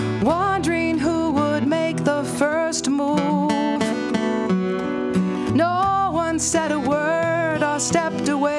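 Folk song played live on two acoustic guitars, strummed and picked, with a woman singing long held notes over them.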